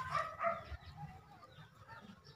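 Short pitched animal calls, loudest in the first half-second and then fainter.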